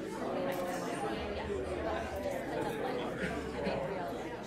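Many people talking at once in a large hall: the overlapping chatter of a congregation greeting one another.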